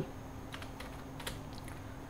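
Computer keyboard typing: a handful of soft, irregularly spaced keystrokes as a short word of code is typed.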